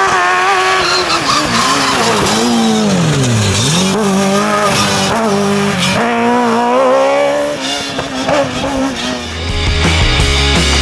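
Fuga 1000 slalom prototype's engine at high revs: the pitch falls steeply over the first three and a half seconds, climbs again with a sudden jump about six seconds in, then fades as the car moves away. Rock music comes in near the end.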